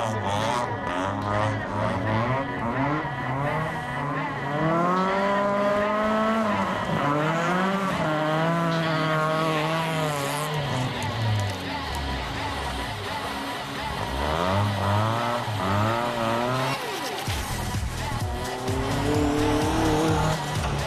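Rally car engines revving hard through the gears, the pitch climbing in long sweeps and dropping at each shift, with tyres scrabbling and skidding on loose dirt. Music plays underneath.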